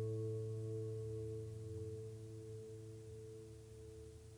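The song's last chord held and ringing out, a few steady notes slowly fading away.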